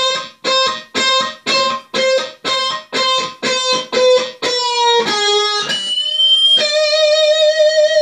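Electric guitar playing a lead lick, with no accompaniment: one note picked over and over at about two a second, then a couple of lower notes and a brief very high note, ending on one long sustained note with vibrato.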